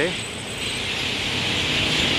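City street traffic: a steady low rumble of passing vehicles that grows a little louder through the second half, under a steady high hiss.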